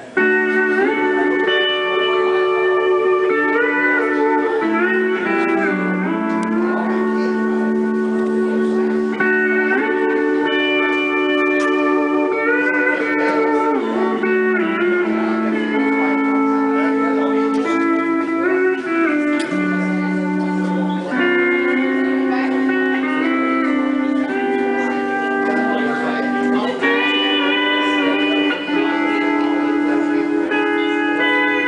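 Pedal steel guitar playing a country song's melody in held chords that glide smoothly from one pitch to the next.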